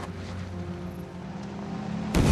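Military jeep engine running in a steady low drone, its pitch shifting slightly about a second in.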